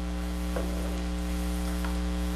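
Funnel cake batter frying in hot oil in a fry pan: a faint, steady sizzle under a steady electrical hum, with a light click about half a second in.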